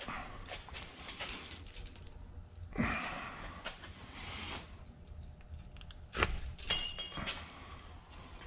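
Handling noise as a raccoon's tail bone is pulled out of the tail skin with a key used as a tail stripper: soft rubbing and scattered clicks, a short rasping slide about three seconds in, and louder clicks with a brief metallic jingle about six to seven seconds in.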